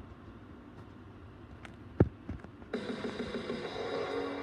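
Television sound picked up by a phone in a room: faint hiss, a single thump about halfway through, then a sports show's opening theme music starting near the end.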